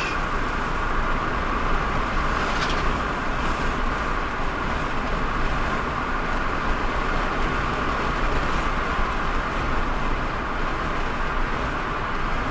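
Steady road noise inside a car cruising at highway speed: tyre noise on the tarmac and engine hum, even and unchanging.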